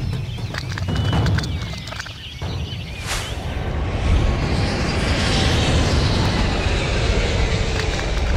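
Intro sound effects: a deep rumble, a short whoosh about three seconds in, then a jet airliner's engine roar building and holding like a plane passing overhead.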